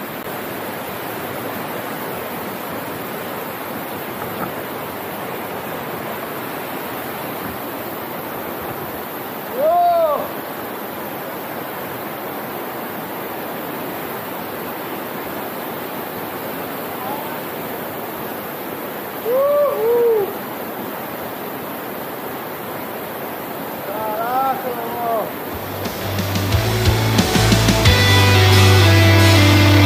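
Steady rush of a small waterfall and stream pouring over rocks into a pool. A few short, rising-and-falling whooping shouts come through it: one about ten seconds in, a pair around twenty seconds and a couple more near twenty-five seconds. Rock music comes in near the end.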